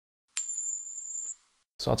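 An editing sound effect: a single high-pitched metallic ding, struck sharply and ringing on one steady tone for about a second before it cuts off.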